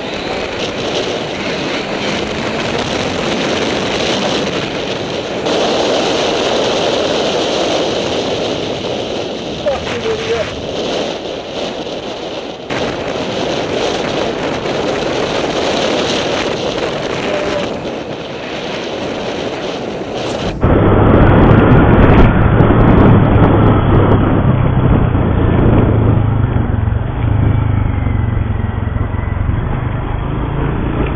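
Motorcycle riding through city traffic, heard from a helmet camera: rush of wind over the microphone with the engine running underneath. About two-thirds of the way through, the sound cuts suddenly to a duller, muffled recording dominated by a steady low engine hum.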